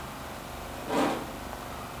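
Quiet studio room tone with one brief, soft voice sound about a second in.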